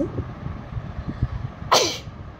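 A person's short, sharp burst of breath with a falling pitch, near the end, over low rumble and soft knocks.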